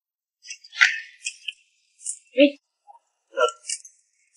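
Short, sharp grunts and gasps of people fighting: a rapid string of brief bursts that starts about half a second in.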